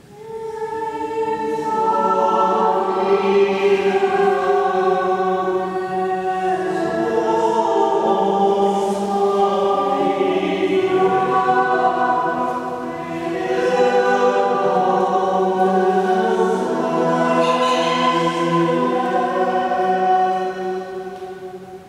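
Several voices singing long held notes together without accompaniment, in slowly shifting harmony. The singing enters at the start, swells over about two seconds and dips briefly about two-thirds of the way through.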